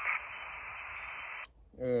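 Steady hiss of HF band noise from the Elecraft KX2 transceiver's speaker once the other station stops talking, cut off about one and a half seconds in by a click as the hand microphone's push-to-talk is keyed and the receiver mutes. A man starts to speak right after.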